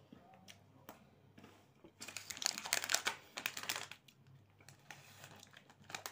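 Snack packaging crinkling as it is handled, with a dense burst of crackling about two to four seconds in and lighter crinkles around it.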